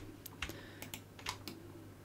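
Faint computer keyboard keystrokes: about five separate taps spread unevenly, over a low steady hum.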